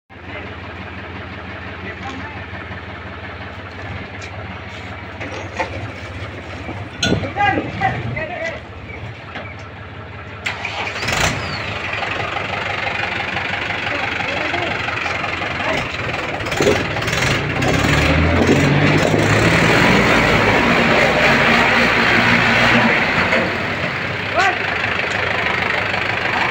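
Diesel tractor engines, a Mahindra 475 DI XP Plus and a John Deere 5045, running steadily up close, with a sharp clack about eleven seconds in. From about two-thirds of the way through, the engine note rises and grows louder as a tractor is revved.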